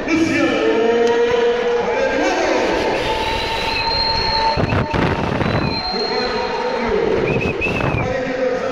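Voices calling out in long drawn-out tones, echoing in a large hall over a steady crowd din, with a few sharp knocks about five seconds in.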